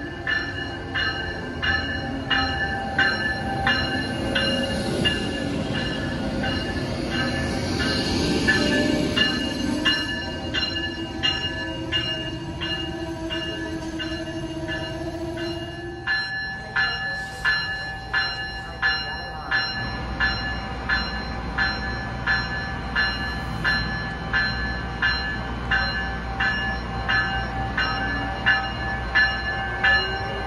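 Amtrak ACS-64 electric locomotive coming into the station, its bell ringing steadily about once every 0.7 seconds. Rolling train noise fills the first half; then the standing locomotive gives a low hum, and a whine rises in pitch near the end.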